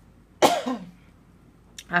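A woman's single short cough about half a second in.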